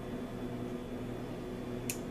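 Steady low electrical hum from the kitchen, with a single faint click near the end.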